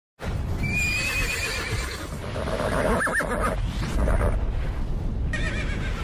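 Horse whinnying: a shaky, wavering high call starting about half a second in, a quick double call around three seconds, and another call near the end, over a continuous low rumble.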